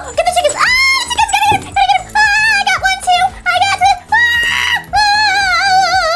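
A high-pitched, wordless, voice-like melody that wavers with vibrato through a run of notes, over background music.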